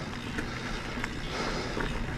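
Riding noise of a full-suspension mountain bike (Norco Fluid FS) on a dirt trail: a steady rush of wind on the camera microphone and tyres rolling over the ground, with a few faint rattles and clicks.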